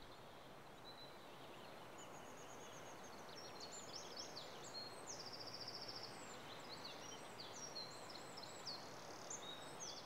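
Faint outdoor ambience: a steady hiss of background noise, with small birds chirping and trilling high up from about two seconds in.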